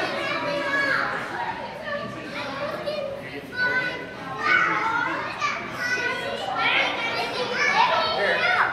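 Young children's voices, chatter and calls, overlapping and continuous, in a large indoor gym hall.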